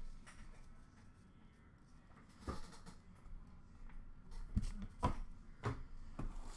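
Trading cards and card packs being handled: a few soft taps and clicks, one about two and a half seconds in and several more in the last second and a half, over a low room hum.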